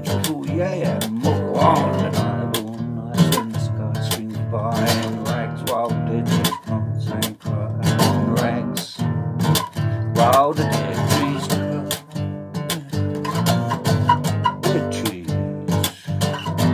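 Bass guitar plucked with the fingers in a continuous run of notes, with a man's wordless sung voice wavering over it.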